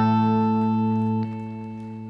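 A single electric guitar note held and ringing out through the amplifier, steady, then dropping to a quieter ring about a second and a quarter in.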